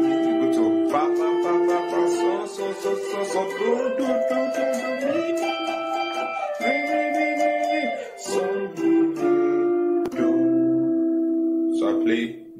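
Electric guitar playing a highlife solo phrase: a line of held, ringing notes, several of them slid up into.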